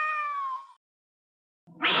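A cartoon cat's meow, one drawn-out call sliding slightly down in pitch and ending within the first second. A louder, harsher sound starts near the end.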